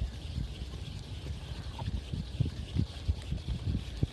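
Wind buffeting the microphone: a low rumble with irregular soft thumps that come more often in the second half, over water lapping at the pier.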